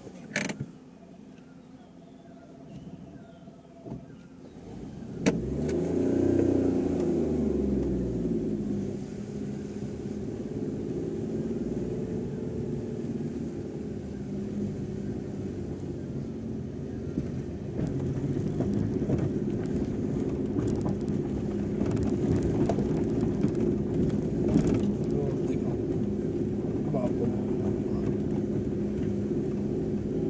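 Car engine heard from inside the cabin: quiet for the first few seconds, then a sharp click and the engine picks up about five seconds in, its pitch shifting as the car pulls away. It then runs steadily under load with tyre and body rattles over a rough gravel road.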